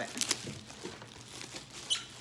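Plastic bubble wrap crinkling and crackling as it is handled and pulled out of a cardboard box. There are sharp crackles a little after the start and another near the end.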